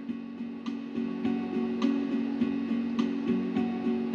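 Soft background music of a plucked guitar, with notes picked at a steady, even pace.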